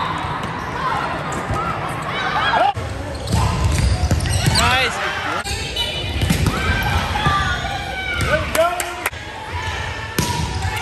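Indoor volleyball rally sounds: the ball being struck and bouncing, sneakers squeaking on the court floor, and players' voices echoing in a large gym. The sound changes abruptly a few times where rallies are cut together.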